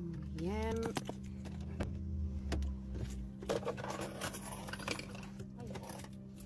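Light clicks and rattling of someone handling a phone while getting out of a parked car, over a low rumble that stops about three seconds in.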